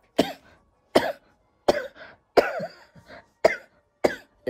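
A woman coughing repeatedly into a close microphone: a fit of about five short coughs, roughly one every second.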